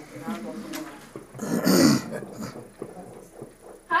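People's voices in a small room: quiet talk, then one loud, harsh vocal burst of about half a second near the middle.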